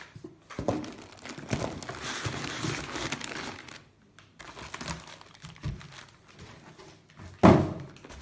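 Handling noise from unpacking a cardboard shipping box: plastic-wrapped contents crinkling and rustling, with a few light knocks. Near the end comes a single loud thunk as the foam-packed unit is pulled out onto the table.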